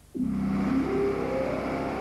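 A motor vehicle's engine accelerating, cutting in suddenly just after the start and climbing in pitch as it revs up.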